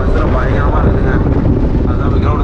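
Steady low rumble of a moving bus's engine and road noise, heard from inside the passenger cabin, with passengers' voices over it.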